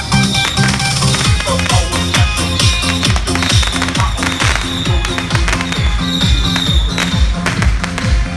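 Loud electronic dance music from a procession truck's loudspeakers, with a pounding kick drum at about two beats a second, mixed with the sharp crackle of firecrackers.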